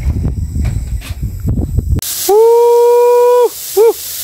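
Charcoal fire under a zinc sheet, heard as a low rumble with scattered crackles. About halfway through it cuts off, and a loud, steady whistle-like tone follows for over a second, bending up at its start and down at its end, then one short blip of the same pitch.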